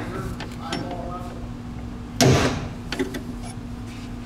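Hammer blows on a punch held in a metal reservoir bracket's mounting hole: a few light taps and one loud strike about two seconds in, marking the centre of the second hole to be drilled.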